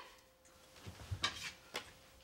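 A few soft thumps and light knocks about a second in, from a person moving on floor bedding.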